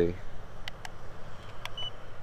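A few faint button clicks on a small handheld FPV radio transmitter, with one short high electronic beep near the end.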